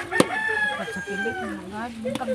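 A rooster crowing: one long call, held for about a second and dropping slightly in pitch at the end. A sharp knock comes just before the call starts.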